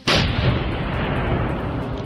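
Controlled detonation of RDX explosive: a single sudden blast, then a long rumble that slowly dies away.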